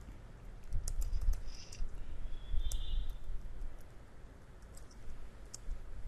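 Computer keyboard keys being typed in short, uneven runs of clicks.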